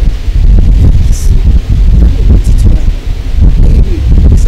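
A woman speaking into a handheld microphone, her voice half buried under a loud, steady low rumble on the microphone.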